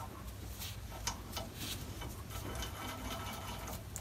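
Faint small clicks and scrapes of a spring-loaded lever lock being screwed into the tool-rest banjo of a wood lathe's outrigger. A few sharper ticks come a little over a second in, over a low steady hum.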